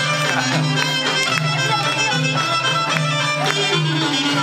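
Traditional Epirus folk dance music, instrumental. A melody plays over low bass notes that repeat in a steady rhythm.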